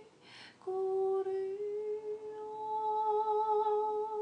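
A woman's voice takes a quick breath, then holds one long wordless note, humming-like with few overtones. The note steps up slightly in pitch after about a second and stays level from there.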